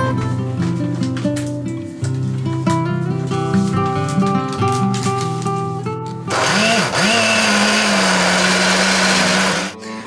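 Background music with a melody for the first six seconds. Then a countertop blender starts, its motor spinning up and running steadily as it purées peas and red onion, and cuts off suddenly after about three and a half seconds.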